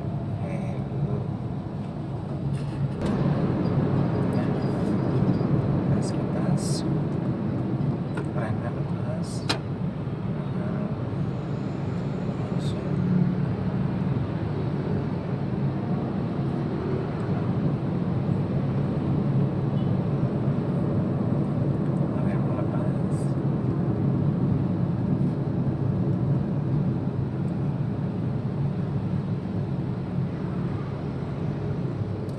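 Steady road and engine noise heard inside a moving car's cabin, growing louder about three seconds in, with a few brief clicks along the way.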